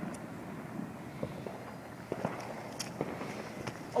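Wind rushing on the microphone outdoors, with a few faint scattered clicks and pops.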